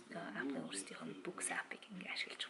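Speech only: a woman talking to the camera in Mongolian.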